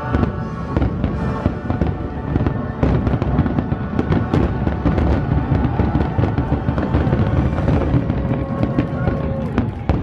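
Fireworks show: aerial shells bursting and crackling in quick, irregular succession, with accompanying music.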